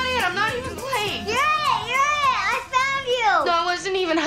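A high voice making wordless, sing-song wailing sounds in a string of rising-and-falling swoops, sliding lower near the end.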